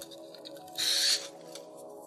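Quiet background music, with one short scratchy rustle about a second in as sandpaper is rubbed against or set down with an air-dry clay pin.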